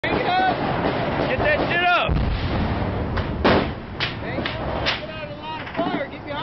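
Small-arms gunfire in a firefight: men shout in the first two seconds, then about five sharp shots ring out roughly half a second apart, the loudest about halfway through.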